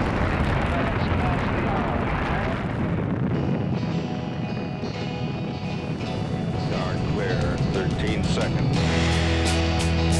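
Saturn V rocket roaring at liftoff, a dense, loud rumble that fades under music from about three seconds in. Music with a heavy bass and a steady beat takes over near the end.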